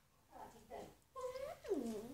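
Meow-like cries: a couple of short ones in the first second, then a louder, longer one that slides down in pitch near the end.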